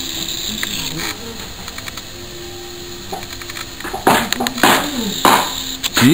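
A man's voice in short, unclear utterances, with louder exclamations in the second half.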